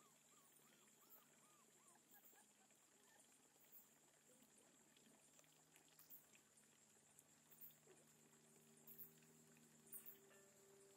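Near silence: faint outdoor ambience with a thin steady high tone, a few faint chirps in the first two seconds and scattered soft ticks.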